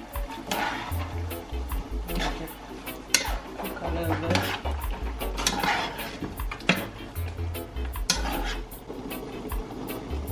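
Metal spoon stirring chicken pieces in a stone-coated pot, scraping the pan in irregular strokes while the chicken sizzles. There is a sharp clink about three seconds in. Background music with a steady bass line plays underneath.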